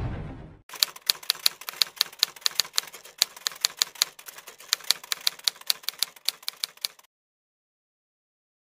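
Typewriter-style typing sound effect: a fast, uneven run of sharp key clicks that cuts off suddenly about a second before the end. It follows the last of a music fade-out.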